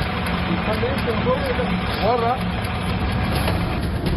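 Armoured cash truck's engine running steadily, with a few brief voice sounds over it about a second and two seconds in.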